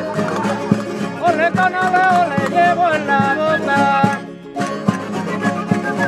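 Spanish folk ensemble playing a parranda. Strummed guitars and a laúd keep a triple-time rhythm with a melody line on top. The playing drops away briefly about four seconds in, then picks up again.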